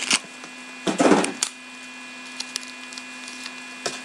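A trading card pack wrapper torn open and rustled, with one loud tearing rip about a second in, followed by a few faint clicks of cards being handled. A steady low hum runs underneath.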